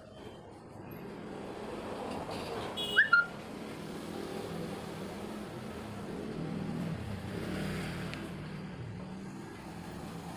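Low background rumble that swells over several seconds and slowly fades, with a short, loud, high-pitched chirp about three seconds in.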